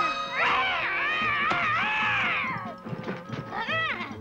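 Cartoon cat yowling in one long, wavering cry over background music, with a short second cry near the end.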